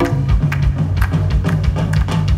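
Live band playing a groove: electric bass line under drum kit and hand percussion, with hand claps from band members on stage.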